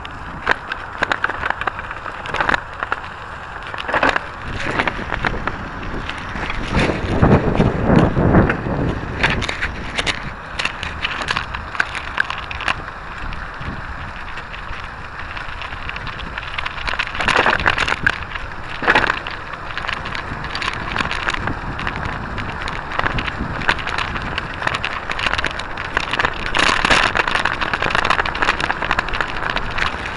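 Noise of riding along: steady wind and rolling rumble on the camera's microphone, with frequent clicks and rattles, swelling to a louder rumble about seven to nine seconds in.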